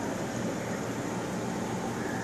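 Steady, even noise of a running reef aquarium's water circulation and pumps.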